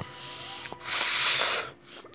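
A breathy hiss from a person's mouth, about a second long, coming in just before the middle and fading out near the end.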